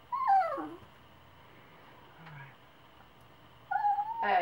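Yorkshire terrier giving one short whine that slides down in pitch, straining to reach a butterfly it cannot get at.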